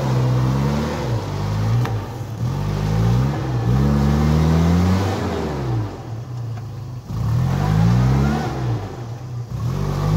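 Nissan Terrano 4x4's engine revving as it drives through wet grass and mud; the revs climb and fall back about four times.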